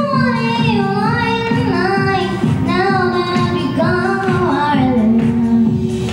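Young girl singing into a handheld microphone over instrumental backing music, her voice bending up and down between notes.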